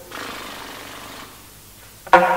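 An unpitched, breathy noise made by the alto saxophonist as an extended-technique noise effect between played notes. It lasts about a second, then dies away to a faint hiss.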